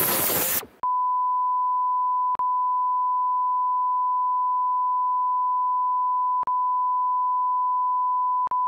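A steady electronic beep tone at one fixed mid pitch, like a test tone, sets in about a second in and holds, broken twice by brief clicks where it drops out. Party chatter fades out just before it begins.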